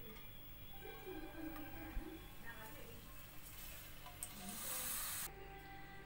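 Faint background music, quiet against the room, with a soft hiss rising about four seconds in that cuts off suddenly about a second later.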